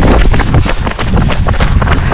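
Heavy wind buffeting on the microphone of a camera carried by a runner going downhill, a loud, continuous rumble with irregular crackles.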